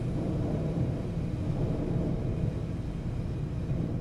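Steady low rumble of a lifeboat running at speed some distance off, heard with the open-air noise of the sea.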